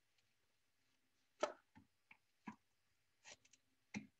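Mostly quiet, with a handful of faint, scattered knocks and clicks, the loudest about a second and a half in: a wooden bat being handled and set back onto the pins of a potter's wheel head.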